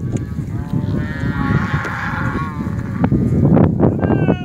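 Brangus cattle mooing: one long, wavering call lasting about two and a half seconds, over a steady low rumble, with a few short knocks near the end.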